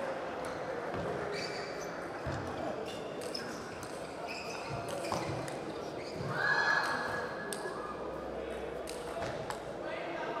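Table tennis rally: the plastic ball clicks sharply off rubber bats and the table in an irregular back-and-forth over hall murmur and voices, with a louder burst of shouting about six and a half seconds in as the point ends.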